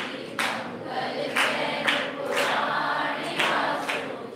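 A group of people singing a devotional bhajan refrain together, with rhythmic hand claps roughly once a second.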